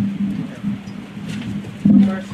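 A steady low hum in a room, with a man's voice starting near the end.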